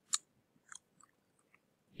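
Computer keyboard keystrokes: one sharper click just after the start, then a few fainter, irregular taps.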